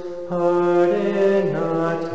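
A man's voice singing a cappella: the psalm response in slow, held notes, with a brief breath just after the start. The melody then steps down in pitch toward a low note at the end.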